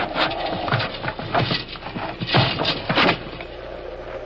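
Radio-drama sound effect of a wooden bed being dragged across a wooden floor: an irregular run of scrapes and knocks.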